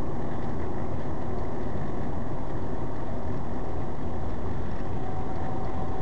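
A car driving along a city avenue, heard from inside the cabin as a steady, even engine and road noise.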